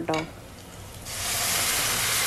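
Shallots and green chillies sizzling softly in hot oil. About a second in, a much louder, steady sizzle starts as chunks of cooked beef go into the hot pot.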